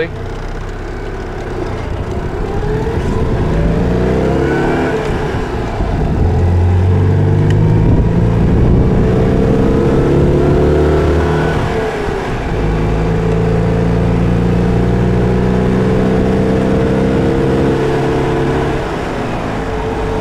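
A 1981 Citroën 2CV's small air-cooled flat-twin engine heard from inside the open-roofed cabin as the car accelerates through the gears, with wind noise. The engine note climbs in each gear, drops at an upshift about twelve seconds in, and dips again near the end as it goes into fourth.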